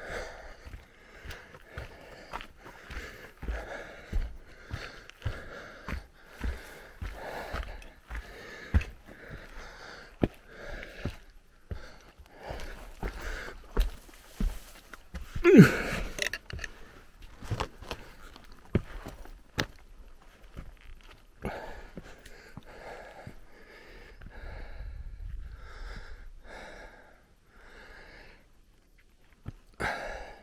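A man breathing hard after a steep uphill hike, in and out about once a second, with one louder, voiced gasp about halfway through.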